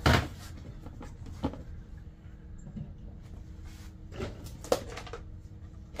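Items being handled and lifted out of a plastic storage tote: a sharp knock at the start, another about a second and a half in, then a few lighter clicks and rustles.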